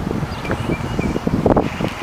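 Wind buffeting the microphone: an uneven low rumble that comes and goes in gusts.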